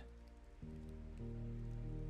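Quiet, slow ambient music of sustained chords over a bed of light falling rain. A new chord comes in about half a second in and swells a little louder shortly after.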